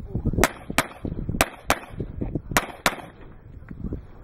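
Handgun fired six times in three quick pairs, each pair of shots about a third of a second apart.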